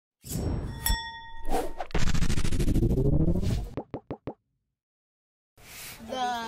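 Intro sound effects: a bright ding about a second in, a long rising whoosh, then three quick pops, followed by a second of silence and then faint room noise.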